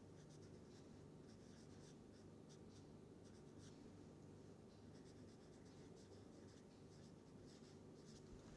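Faint strokes of a felt-tip marker writing letters on paper, coming in short irregular scratches several times a second.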